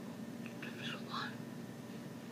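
A woman's soft whispered voice, a few brief syllables about half a second to one second in, over a steady low hum.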